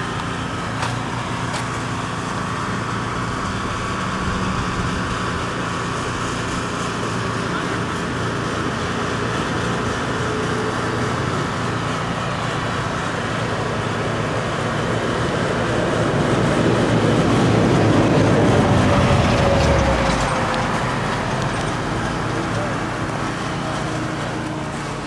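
Steady outdoor traffic hum with a vehicle passing nearby. Its sound swells about two-thirds of the way through, then fades.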